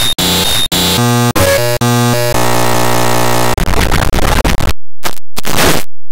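Loud, heavily distorted digital audio effect: a stuttering loop with a high whistle about twice a second, then chopped pitched tones, a steady buzz, and harsh noise that cuts in and out near the end.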